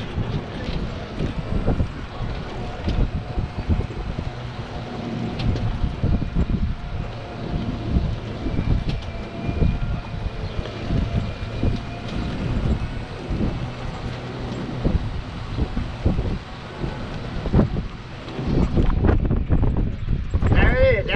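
Golf cart driving along a paved road, with wind buffeting the microphone over the cart's running noise and irregular knocks and rattles. A faint steady whine runs through the middle.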